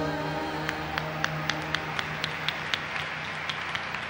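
A live band's final held chord fading out as the song ends, giving way to audience applause with steady rhythmic clapping, about four claps a second.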